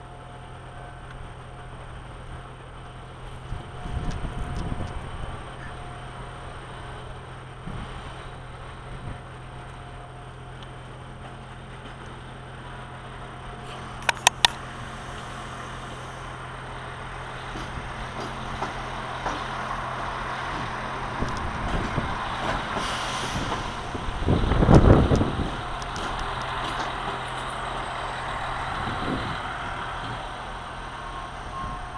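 Diesel multiple unit 222M-001 shunting: a steady diesel engine drone that grows louder through the second half as a railcar draws closer, loudest with a low rumble about 25 seconds in. Two sharp clicks about 14 seconds in.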